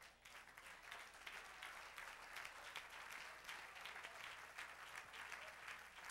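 A congregation applauding: a faint, even patter of many hands clapping, kept up without a break.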